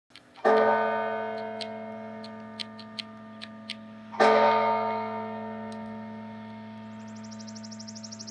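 A large bell struck twice, about four seconds apart, each stroke ringing out and slowly dying away, with a few light ticks between the strokes. A rapid high fluttering tone comes in near the end.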